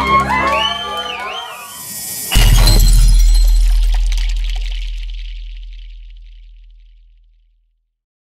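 Live mariachi band music cutting off in the first second, then a logo sound effect: a few sweeping tones, and about two seconds in a sudden deep boom with a bright glassy shatter that slowly fades away over about five seconds.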